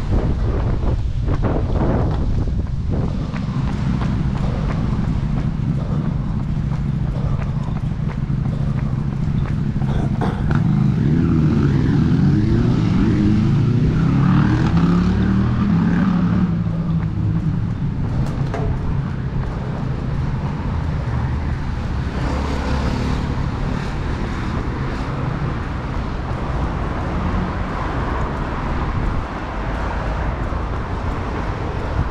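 City road traffic running steadily beside the sidewalk. A motor vehicle passes close between about ten and sixteen seconds in, its engine note sliding in pitch.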